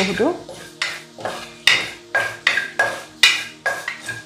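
Wooden spatula stirring and scraping dry mustard seeds and lentils (urad and chana dal) around a metal pan, in quick repeated strokes about two or three a second.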